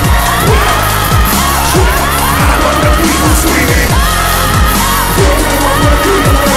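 Hip-hop backing track played loud through a venue PA for a live rap performance, with deep kick drums that drop in pitch and a wavering melody line over them.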